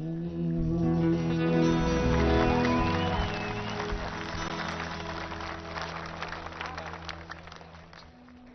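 A live band's closing chord, electric guitar over bass and drums, held and ringing out, swelling about two seconds in and then fading away. Scattered applause from the audience comes in about halfway through and dies down with the music near the end.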